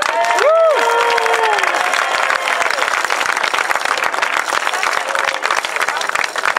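Crowd applauding steadily, with a short call that rises and falls in pitch about half a second in.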